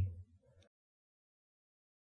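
The tail of a spoken word fades out just after the start, then digital silence.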